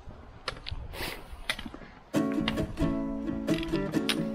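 Strummed acoustic guitar music starts suddenly about halfway through and is the loudest sound. Before it come a few faint taps and steps, from trekking poles and boots on a rocky trail.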